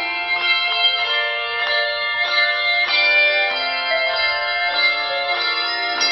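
Handbell choir playing a piece: many handbells ringing together in chords, with new notes struck roughly every half second over the ringing of the last.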